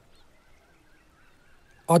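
A quiet pause between lines of dialogue: faint background ambience with a few soft wavering tones. A man's voice starts again near the end.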